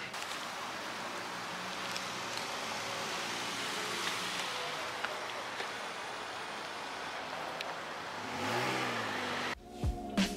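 Steady rush of road traffic, with a car engine rising and falling in pitch about eight and a half seconds in; the sound cuts off suddenly just before the end.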